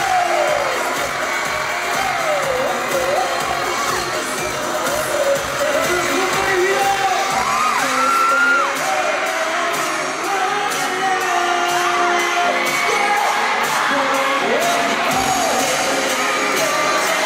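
Live K-pop boy band performance heard from the audience: amplified music with singing over the stage speakers, mixed with fans shouting and cheering.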